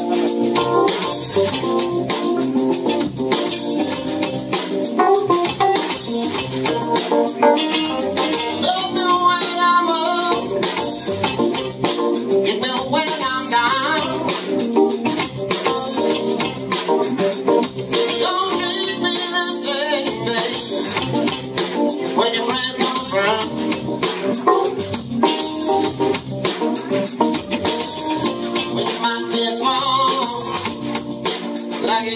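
A live band playing a song: keyboard, drum kit and electric guitar, with a man's voice singing at times.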